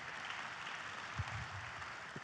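An audience applauding lightly, a steady patter of clapping, with a brief low thump about a second in.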